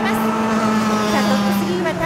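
Two-stroke racing kart engines running hard as two karts chase each other through a corner, a steady high-revving buzz whose pitch drops near the end as they lift off.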